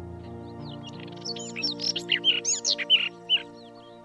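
A robin singing a burst of rapid, high whistled notes that sweep up and down, from about a second in until shortly before the end. Slow, sustained background music runs under it.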